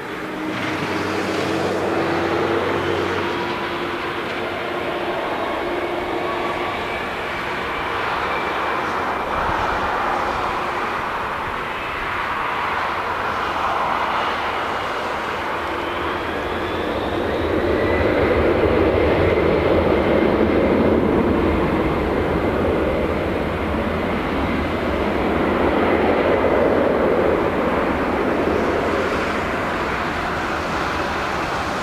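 Twin turbofan engines of a Boeing 767-200ER running up to takeoff thrust, with a whine that rises in pitch over a steady engine noise. The sound grows louder from just past halfway as the jet accelerates away on its takeoff roll.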